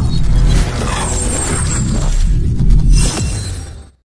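Logo intro sting: music and sound effects over a heavy deep bass rumble, with a sweeping rush about three seconds in. It then fades out quickly to silence just before the end.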